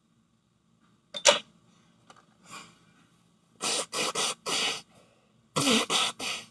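A woman's single sharp burst of breath about a second in, then short hard blows of her nose into a tissue, three in a row and then two more near the end, from sinus congestion.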